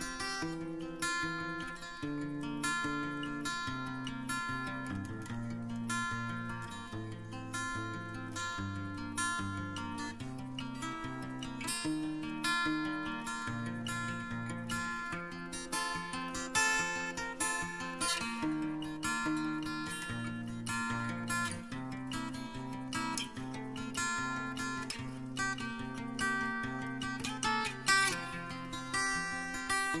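Instrumental acoustic guitar music: steady strummed chords with a moving bass line and melody.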